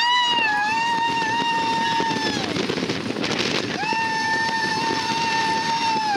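Roller coaster riders screaming: two long, steady high screams, the first held for about two and a half seconds and the second starting near four seconds in. Under them is the steady noise of the moving coaster train and wind on the microphone.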